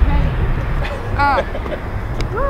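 A short, high-pitched vocal exclamation about a second in, over a steady low outdoor rumble.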